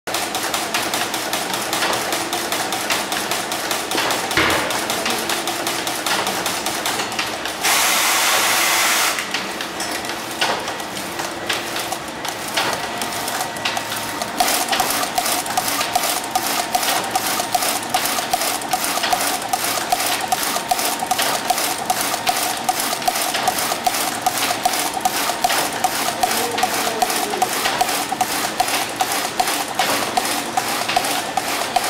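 Automatic glove knitting machine running, its knitting carriage traversing the needle bed with a rapid, even mechanical clatter. A loud hiss lasts about a second and a half near the 8-second mark, and a steady whine joins the clatter about halfway through.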